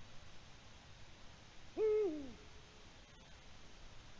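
Eurasian eagle-owl giving a single deep hoot about two seconds in, held briefly and then falling in pitch.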